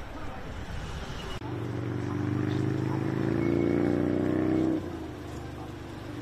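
A car engine running close by, its pitch rising gently as it accelerates, then cutting off suddenly near the end.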